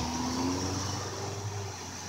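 A car driving past on the road, its tyre and engine noise slowly fading as it moves away.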